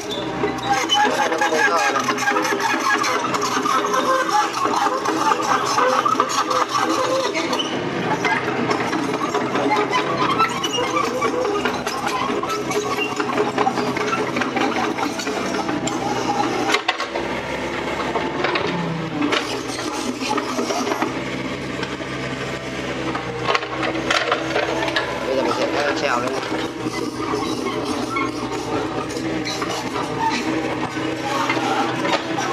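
Mini excavator's engine running steadily while the machine rakes and levels soil and gravel, under a louder wavering melodic layer that sounds like background music.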